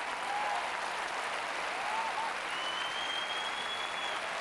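Large audience applauding, a steady even clapping.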